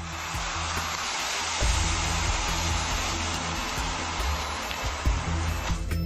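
Thermite burning against a steel section, a loud, steady hissing rush that starts abruptly and cuts off just before the end. Low background music plays underneath.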